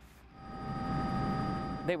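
Aircraft engine noise fading in about half a second in, then holding as a steady rushing drone with several steady high whining tones, until a man's voice starts near the end.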